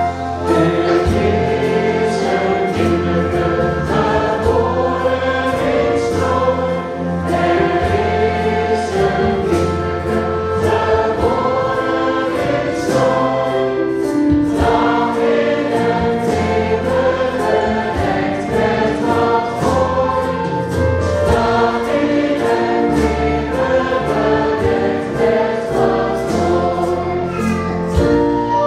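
Group of singers performing a song with a small live band of flute, accordion, double bass and drum kit, over a steady beat.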